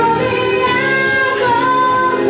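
Woman singing a melody of held notes into a microphone, with electric guitar accompaniment, in a live performance.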